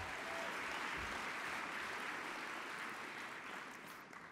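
Audience applauding in a large hall, a steady patter of many hands that dies away in the last second.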